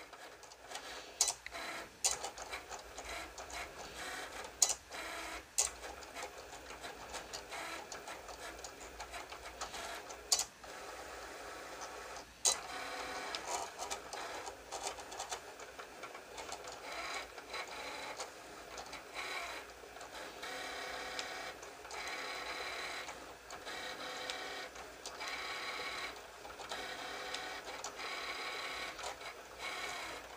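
Cricut cutting machine cutting iron-on vinyl: its motors drive the blade carriage and mat in short runs, with a few sharp clicks in the first half and longer stretches of motor noise in the second half.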